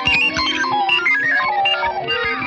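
1959 Fender Jazzmaster electric guitar played through effects pedals: a fast, dense flurry of short picked notes jumping around in pitch.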